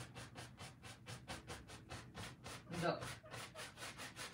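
Rapid, rhythmic scrubbing strokes of a painting tool on an oil-painted canvas, about eight a second, faint.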